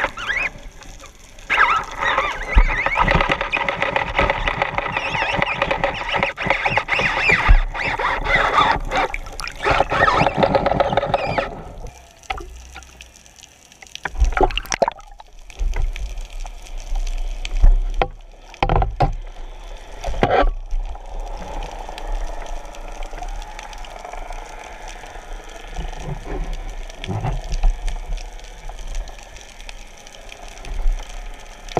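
Water rushing and gurgling around an underwater camera mounted on a speargun, loud for about the first eleven seconds. It is then quieter, with several sharp knocks and splashes as a speared fish is handled at the surface.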